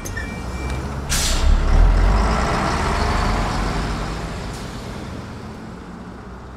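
A heavy vehicle's air brakes let out a sharp hiss about a second in. Its deep engine rumble then swells and slowly fades as it pulls away.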